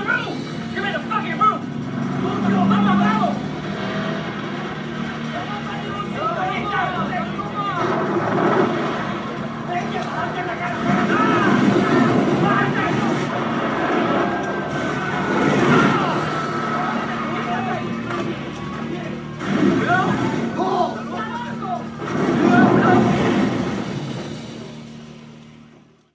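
Film soundtrack mix of voices without clear words over a car engine running and music, with a long falling tone about halfway through, fading out at the end.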